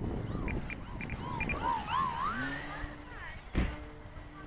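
A model aircraft's small motor winds up in pitch a little over two seconds in, then holds a steady note. Wavering whistle-like tones come before it, there is a single knock near the end, and wind rumbles on the microphone throughout.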